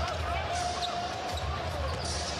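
A basketball being dribbled on a hardwood court, with low repeated bounces over the steady noise of a large arena crowd.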